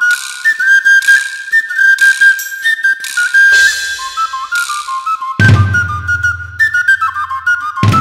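Background film music: a high, piping melody over light, regular percussion hits, with a low bass line entering about five and a half seconds in.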